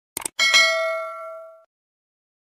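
Sound effects from a YouTube subscribe animation: a quick double click, then a notification-bell ding that rings and fades out over about a second.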